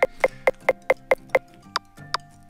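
An iPhone obstacle-detection app's proximity alert, short pitched ticks repeating about five times a second and thinning out near the end. The faster the ticks repeat, the closer the LIDAR-detected obstacle, here a door about one and a half metres away.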